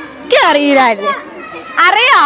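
A child's voice speaking two short, high-pitched phrases about a second apart, the first falling in pitch, over the background chatter of a group of children.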